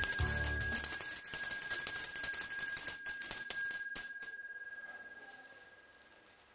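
An alarm clock bell ringing with rapid strikes, stopping about four seconds in and fading away. The tail of the intro music runs under it for about the first second.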